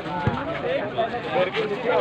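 Volleyball spectators shouting and calling out over each other, many voices at once, during a rally. A single low thump comes shortly after the start.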